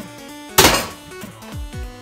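A thrown water bottle landing hard with one loud thunk about half a second in, over background music with a regular beat of falling bass notes.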